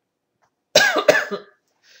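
A person coughing twice in quick succession, starting about three quarters of a second in.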